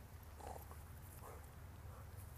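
Short, breathy animal sounds, about five in two seconds, over a low steady rumble.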